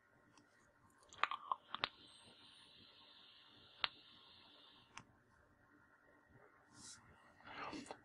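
A few clicks from handling and pressing the fire button of an Innokin iTaste VTR e-cigarette, then a soft steady hiss lasting about three seconds as a draw is taken through the iClear 30 clearomiser at 11 watts, ending with a click; a faint breath out near the end.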